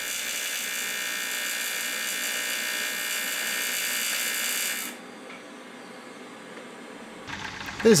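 TIG welding arc on an aluminium box seam, a steady high-pitched buzz that stops suddenly about five seconds in.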